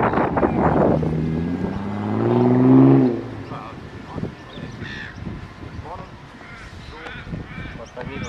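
A crow's long, drawn-out caw of about two seconds, growing louder and cutting off about three seconds in, after a second of wind noise on the microphone. Faint short bird chirps follow.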